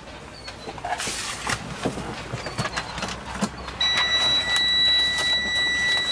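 Handling rustle and a few soft knocks, then a steady high electronic warning beep, a single held tone that starts a little past halfway and lasts about three seconds, from a warning buzzer in the truck cab.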